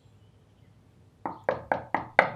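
Knuckles knocking on a wooden door: four quick, sharp knocks starting just over a second in.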